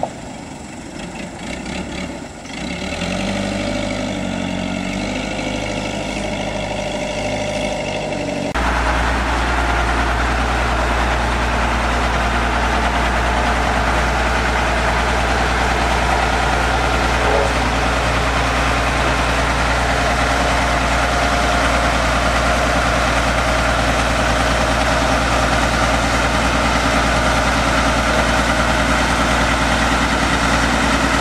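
Diesel engines of road-building machines running; about eight seconds in the sound changes abruptly to a louder, steady, deep running of a single-drum road roller's diesel engine close by.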